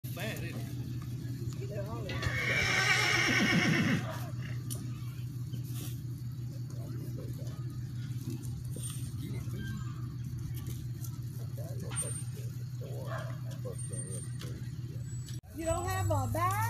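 A horse whinnies once, a quavering call of nearly two seconds that falls in pitch at its end, over a steady low hum and faint voices.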